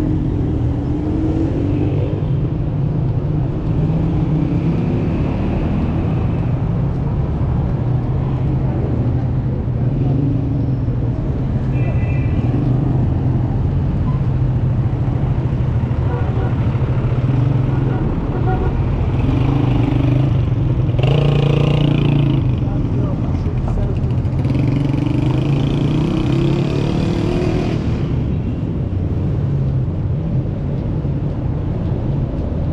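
City street traffic: cars, taxis and a truck drive past with a steady low engine rumble. A louder stretch comes about two-thirds of the way in, and voices are heard at times.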